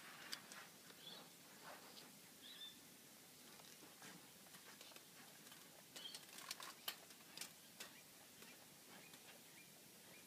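Mostly near silence, with faint, soft clicks and small wet sounds of a koala lapping water from a plastic bowl, a quick cluster of them about six to seven and a half seconds in.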